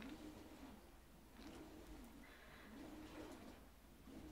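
Near silence, with a faint low bird call that rises and falls about four times in the background.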